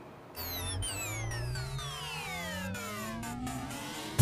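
Synthesized transition sweep: a cluster of electronic tones slides steadily down in pitch while a low tone rises beneath them, starting about a third of a second in and holding an even level.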